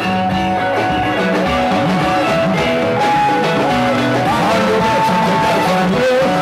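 Music with bright electric guitar lines over a steady bass, playing continuously at a loud level.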